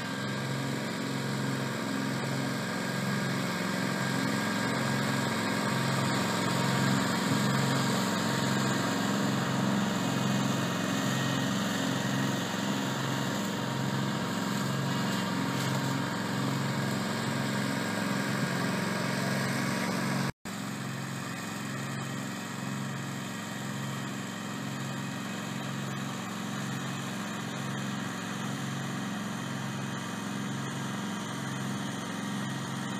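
Ransomes Spider remote-controlled slope mower's engine running steadily with a regular throb about once a second as the machine drives over the lawn. The sound cuts out for an instant about twenty seconds in.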